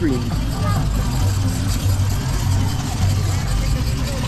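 Busy outdoor ambience: a steady low rumble with faint voices of people in the background.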